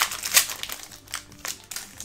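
Foil trading-card booster pack wrapper crinkling in a run of irregular sharp crackles as it is pulled open by hand, the loudest about half a second in.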